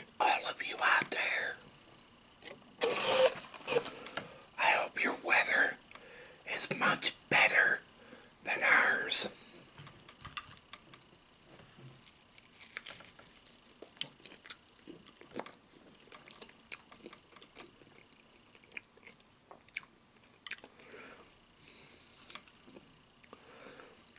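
Close-miked eating of crispy fried chicken: loud bursts over roughly the first nine seconds, then quieter chewing with many small crunches and wet mouth clicks.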